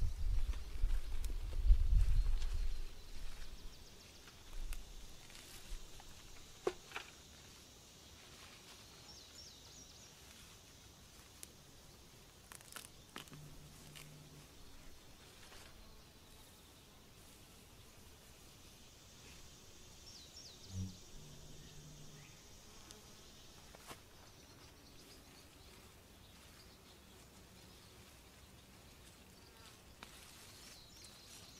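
Quiet summer garden ambience: faint, steady insect buzzing, with a low wind rumble on the microphone in the first few seconds. A few faint clicks and rustles come from plants being handled.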